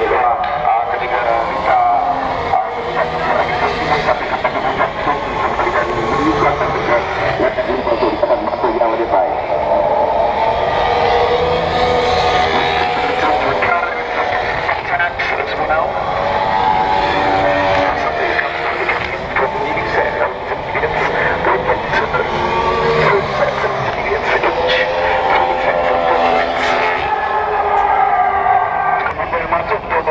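Formula 1 cars' engines running on the circuit, a high engine note rising and falling in pitch as cars pass, over a steady rumble.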